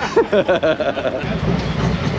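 Laughter, then about a second in a Harley-Davidson Milwaukee-Eight V-twin starts and runs with a steady low rumble.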